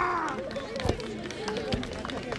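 A concrete slab being smashed in a breaking demonstration: a dull thud about a second in, then a second, lighter thud near the end as the broken slab comes down. A drawn-out shout fades out at the start.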